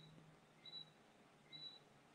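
Faint short high-pitched chirps repeating evenly about once every 0.8 seconds, three in all, over near-silent room tone.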